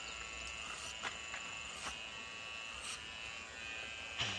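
Electric hair clippers buzzing steadily as they crop a child's hair short, with a few faint ticks about a second apart.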